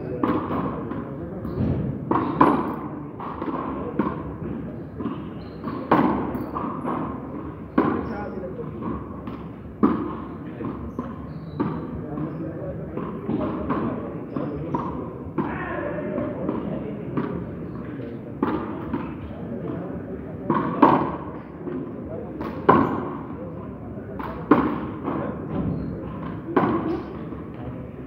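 Ball rally in a frontón court: sharp hits of the ball against the walls and the players' strokes, ringing in the enclosed court, coming every second or two at an uneven pace.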